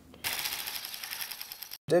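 A film projector running: a rapid, even mechanical clatter that starts a moment in and cuts off suddenly just before the end.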